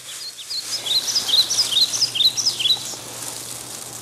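A songbird chirping a quick series of short high notes, about three a second, from about half a second in to near the three-second mark. Beneath it, a faint rustle of dry fallen leaves being scooped up by hand.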